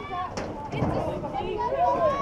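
Several voices talking and calling out at once, players and spectators chattering around a softball field, with one short sharp click about half a second in.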